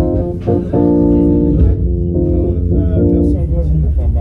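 Small live band playing: a guitar lead of held notes over drums and keyboard, with a heavy low end.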